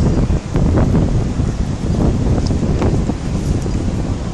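Wind buffeting the microphone, a loud low rumble, with a couple of faint clicks about a second in and near three seconds.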